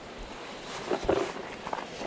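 Footsteps on loose creek-bank gravel, a few uneven steps about a second in, over the steady hiss of flowing creek water.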